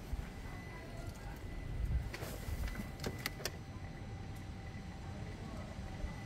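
Faint clicks a couple of seconds in, over a low steady background hum, as the ignition of a Peugeot RCZ is switched on to prime its newly rebuilt fuel pump; the engine is not running.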